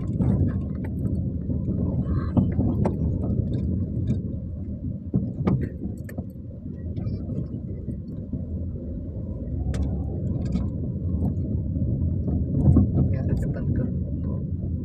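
Car cabin noise while driving on a rough, dusty street: a steady low engine and road rumble, with scattered light clicks and rattles.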